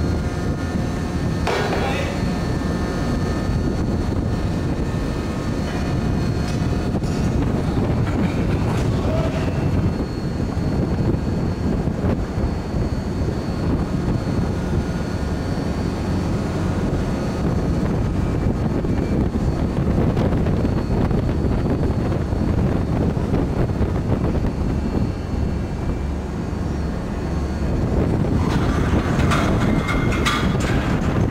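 Steady loud drone of an offshore vessel's deck machinery, with a few brief clanks about two seconds in and again near the end.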